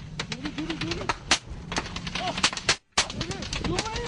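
Rapid, irregular gunfire cracking around a car, shots coming close together, with men's voices crying out inside the car in the second half. The sound drops out for a moment just before three seconds in.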